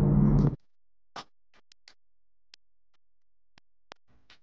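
BMW 335's engine running steadily, heard inside the cabin, cut off abruptly about half a second in. Then near silence with a few faint, sharp clicks of sparse electronic music.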